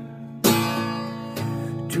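Steel-string acoustic guitar strummed. A full chord is struck about half a second in and left to ring, with lighter strums following near the end.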